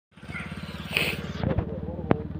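A small engine idling steadily, an even low hum, with a couple of brief knocks about one and a half seconds in.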